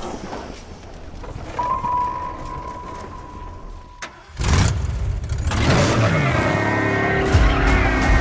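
Film-trailer sound effects: a low rumble with a steady high ringing tone, a sharp click about four seconds in, then a sudden loud hit. After that comes a car engine revving with gliding pitch and tyres skidding as the car drifts, mixed with music.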